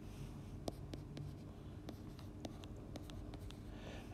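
Stylus writing on a tablet: faint, irregular light taps and scratches as a short mathematical term is written.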